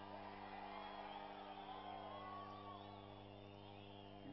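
Faint crowd noise with scattered calls and whoops over a steady electrical hum from a public address system.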